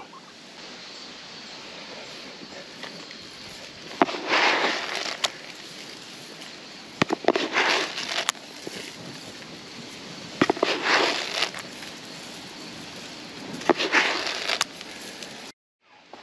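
Oat seed being tossed by hand onto bare soil and dry grass: four rustling bursts about three seconds apart, each lasting about a second, with a few sharp clicks, over a steady faint hiss.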